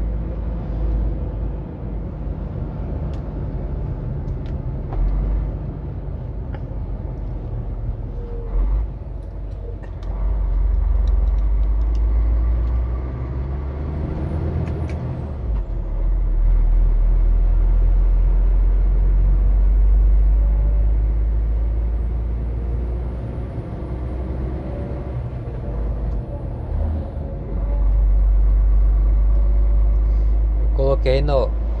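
Truck engine and road noise heard from inside the cab while driving, a steady low drone that swells louder several times as the engine pulls.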